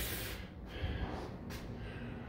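Faint breathing of a person, over low room noise with a few soft thumps.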